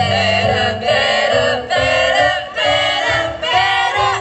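Women's vocal group singing together through microphones over keyboard accompaniment. They sing in short phrases broken by brief pauses, about one a second.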